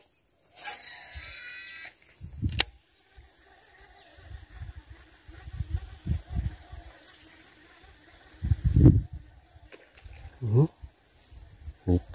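Insects chirring steadily at a high pitch while a rod and reel cast a lure: a brief whir of line about a second in, then a sharp click, then low rustles and thumps as the lure is worked back. The loudest thump comes about nine seconds in.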